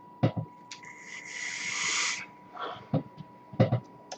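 A long drag on a vape mod: an airy hiss of breath drawn through the atomizer for about a second and a half, then short breathy sounds as the vapour is let out.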